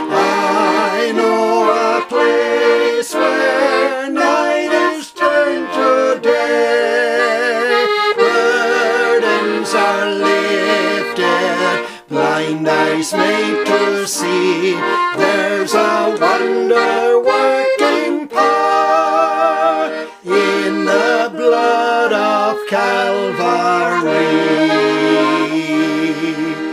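A man and a woman singing a gospel chorus together, accompanied by a piano accordion.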